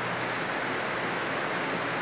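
A steady, even rushing hiss that does not change.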